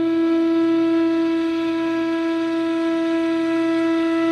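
Indian flute holding one long, steady note with rich overtones, unchanging in pitch and loudness.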